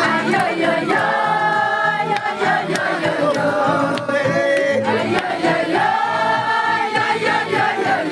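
A crowd of voices singing together loudly in a group chant: long held notes in phrases of about a second each, several swooping up at the start, over steady crowd noise.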